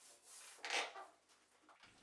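Faint rubbing strokes of a short-pile paint roller over vinyl wallpaper, two soft swishes in the first second, then near quiet.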